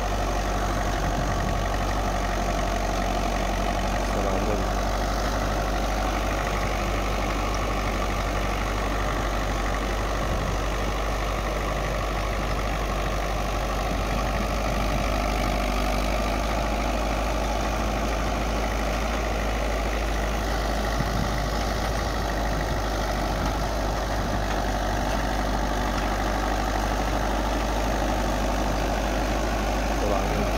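El Nasr 60 tractor's diesel engine running steadily under load while ploughing, pulling a tillage implement through dry soil.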